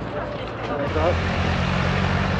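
Police motorcycle engine running steadily at low speed as it rides past, coming in suddenly about a second in.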